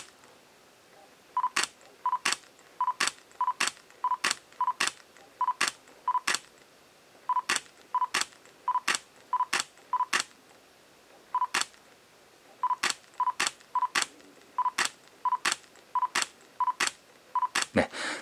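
Nikon Z mirrorless camera with a NIKKOR Z 85mm f/1.8 S lens firing shot after shot: each frame is a short focus-confirmation beep followed by the shutter click, about 25 times in quick succession with a few brief pauses. This is a shot-to-shot delay test, where the lens refocuses between frames before each release.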